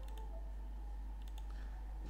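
A few faint computer-mouse clicks, one group right at the start and another about a second and a half in, over a steady low electrical hum.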